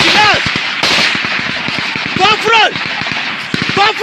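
Gunfire in a close firefight, shots cracking in quick strings, with men shouting over it.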